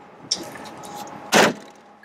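Light clicks, then one loud, short metal clack of a truck door or latch about a second and a half in.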